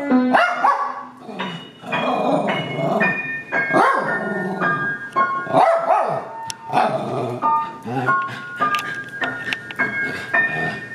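A small dog barking repeatedly at a piano being played, the barks coming about once a second between and over single piano notes.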